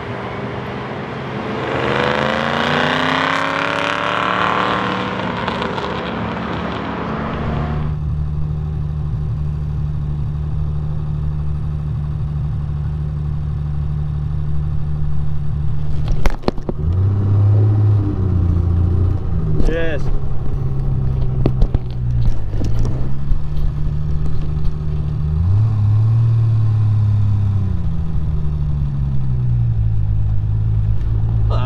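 A car passing on the circuit, its engine note falling away as it goes by. Then, from inside the open Triumph TR6, its 2.5-litre straight-six droning steadily. In the last dozen seconds the engine rises and falls in pitch several times with throttle and gear changes.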